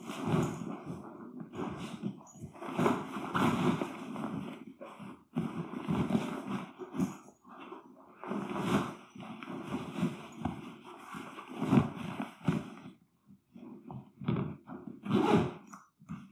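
A rolled canvas swag (Darche AD Swag 1100) being lifted and stuffed into its nylon carry bag: irregular bursts of fabric rustling and scraping, with dull knocks as the heavy roll is handled.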